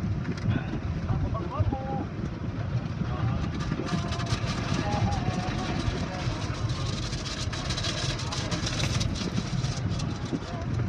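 Automatic car wash heard from inside the car: cloth strips of the wash rubbing and slapping over the windshield and body over a steady low rumble of the machinery. From about four seconds in, a dense rapid patter and swish of the strips and water grows stronger.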